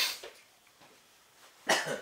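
A person coughing twice, sharply, about a second and a half apart, during an allergy flare-up.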